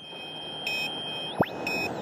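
Electronic sound effects of a TV news 'welcome back' bumper: a steady high electronic tone with short beeps twice, over a swelling whoosh, then swooping tones that fall in pitch about one and a half seconds in.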